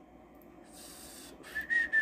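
A person whistling softly to himself: after a short hiss about a second in, a few short, steady, high notes start near the end and step down in pitch.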